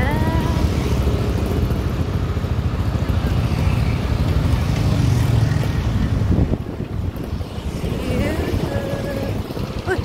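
Wind buffeting the microphone over a motor scooter's running engine while riding along a road; the rumble drops noticeably about six and a half seconds in.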